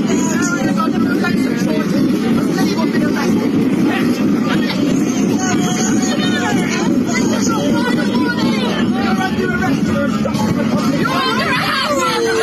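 Crowd noise from a street gathering: many people talking and calling out at once in a continuous babble, heard through a video-call stream.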